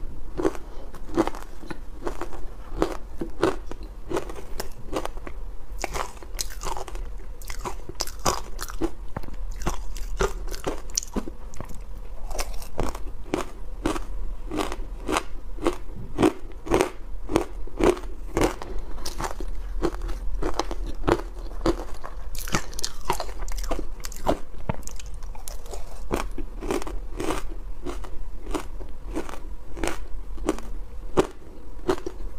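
A person chewing powder-coated ice, a rapid steady run of sharp crisp crunches at about two a second, picked up close by clip-on microphones.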